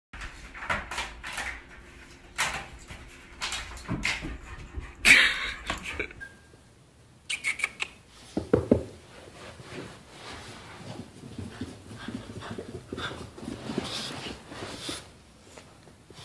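Dogs vocalising: a run of short sharp sounds for about the first six seconds, then after a short break a few louder calls and softer whining from a small dog.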